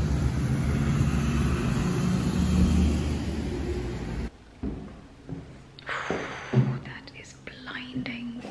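Road traffic passing, a steady rush of tyres and engines, cut off abruptly about four seconds in. After that come quieter scattered clicks and rustles close to the microphone.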